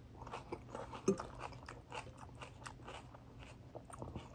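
A person chewing a mouthful of salad close to the microphone: a run of small, crisp crunches, the loudest about a second in.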